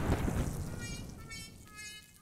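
The tail of a bomb explosion sound effect: the blast's rumble dying away over about a second and a half.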